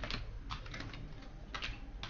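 An irregular run of light clicks and taps, several spaced unevenly across the two seconds.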